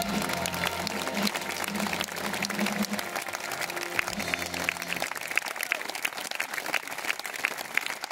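Audience applauding as the song's final chord rings on and dies away about five seconds in; the clapping carries on after the music has stopped.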